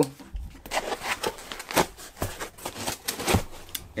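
Handling noise from a microphone, its cable and a metal shock mount being picked up and turned over: irregular rustles, small clicks and light knocks.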